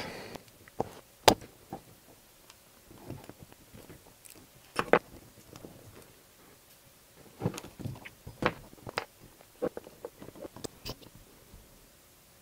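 Scattered light metallic clicks and taps from small aluminium engine parts being handled and fitted: the cylinder of a miniature V-twin model engine going onto its crankcase and its small screws being set with a hex key.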